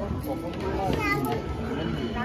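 Crowd chatter in a busy hall, with children's voices and music playing in the background.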